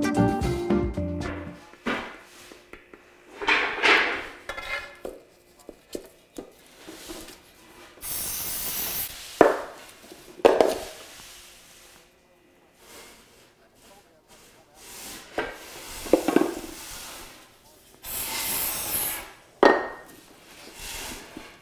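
An aerosol spray can hissing twice, once for about a second and a half about eight seconds in and again for about two seconds near the end, sprayed onto a piece of wooden trim molding. Between the sprays come a few sharp knocks and rubs of molding pieces being handled and set down, and guitar music fades out at the start.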